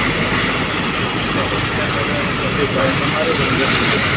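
A car driving through deep floodwater, heard from inside the cabin: a steady rumble of engine and tyres with the wash of water against the wheels.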